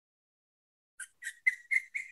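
A bird chirping: a run of short, high, repeated notes, about four a second, starting about halfway in.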